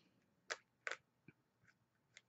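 Two faint short clicks of paper and cardstock being handled as a pennant banner is pressed down onto a layered card, with a few tinier ticks after, in otherwise near silence.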